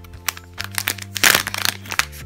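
Plastic packet of powder sheets crinkling and crackling as it is handled and its lid opening pressed open, with a loud burst of crackling about a second in.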